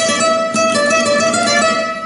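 Nylon-string flamenco guitar played with the right-hand fingers striking the strings with flesh and nail together. The notes ring steadily and stop just before the end.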